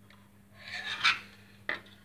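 Plastic scale model airplane being turned over on a tabletop: a short rubbing scrape of plastic against the surface, followed by one sharp click.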